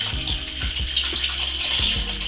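Cold water pouring steadily from a kettle into a steel saucepan.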